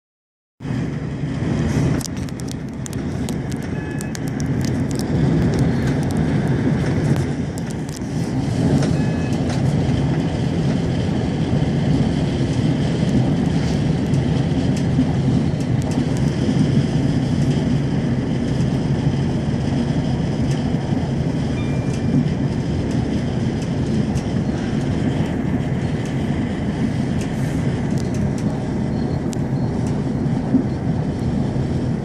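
Steady rumble of a diesel passenger train running along the line, heard from inside the carriage, starting about half a second in. Scattered clicks and rattles sound over the rumble in the first ten seconds or so.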